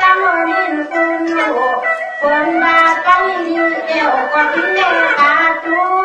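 Tai Lue khap singing: a solo voice sings drawn-out phrases with sliding, ornamented pitch over a steady instrumental accompaniment.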